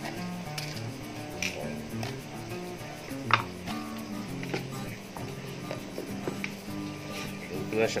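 Background music with a slow melody, over which plastic containers and lids give a few light clicks and knocks as they are handled; the sharpest click comes about three seconds in.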